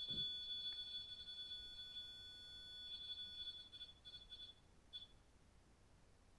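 A Mel Meter ghost-hunting meter sounds its faint, high electronic alert tone as its antenna sensor goes off. The tone wavers and pulses, stops about four and a half seconds in, and gives one last short blip.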